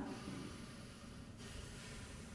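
Faint breathing through the nose, a soft hiss that swells a little in the second half. It is a singer's nasal-breathing exercise, meant to send the air into the nasal cavity for resonance.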